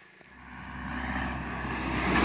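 Foton light box truck approaching and passing close by: engine rumble and tyre noise rising steadily from a faint start to loud near the end.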